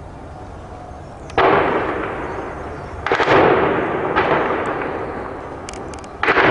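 Heavy blasts from tank shelling echoing between buildings: two loud booms about a second and a half apart, each followed by a long rolling echo, with a smaller crack just after the second.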